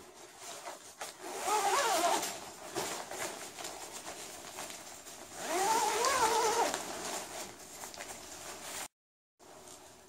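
A newly sewn-in tent fly zipper being pulled twice, about a second in and again about five seconds in. Each run is a zipping sound lasting a second or two, its pitch rising and falling with the speed of the pull. The zipper runs through, working as it should.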